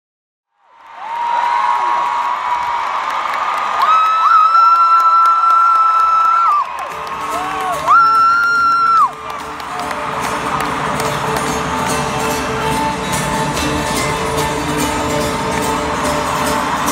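A huge stadium concert crowd cheering and singing, fading in from silence about a second in. Voices hold two long, loud sung notes around four and eight seconds in. From about seven seconds in, the band's amplified live music with heavy bass plays under the crowd.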